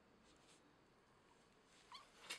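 Near silence, then one short, faint kitten mew with a rising pitch near the end.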